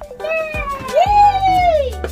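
A long meow-like call that dips, rises, then slides down in pitch, over background music.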